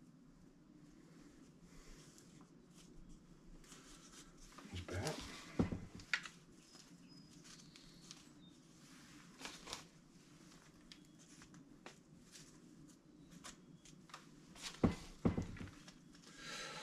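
Quiet handling sounds of compost being pressed into a thin red plastic cup around a tomato seedling: soft rustling of soil and the cup, with a few short, louder scrapes and clicks about five, nine and fifteen seconds in, over low room tone.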